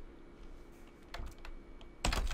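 A few faint keystrokes on a computer keyboard, mostly in the second half, as a line of JavaScript code is typed.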